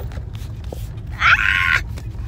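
A woman's short, high-pitched shriek lasting about half a second, over the steady low rumble of a car cabin.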